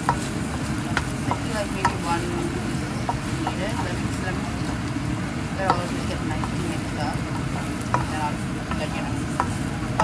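Pork and sliced onions frying in a nonstick pan while being stirred with a wooden spatula: sizzling, with scattered scrapes and knocks of the spatula against the pan, over a steady low rumble.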